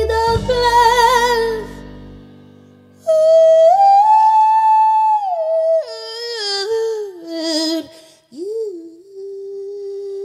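Female singer and live band finishing a phrase, dying away by about two seconds in. Then the singer alone sings a wordless run of long held notes that step down, with a wavering passage and a rising swoop near the end, followed by one steady held note.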